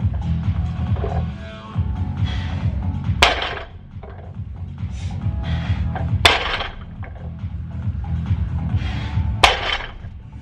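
Background music with a steady drum beat, cut through by three loud, sharp impacts about three seconds apart: a 140 kg barbell with rubber bumper plates set down on the gym floor between deadlift reps.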